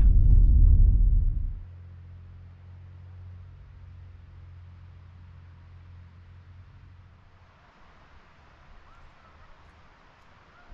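Car road rumble heard from inside the cabin while driving, cutting off about a second and a half in. A faint steady low hum follows and fades away, leaving quiet outdoor background.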